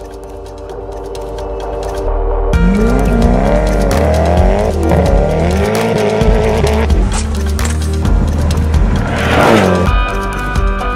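Background music with sustained chords, then about two and a half seconds in a sudden switch to the Koenigsegg Agera R's twin-turbo V8 revving up and down repeatedly as the car drifts. The tyres squeal, loudest near the end.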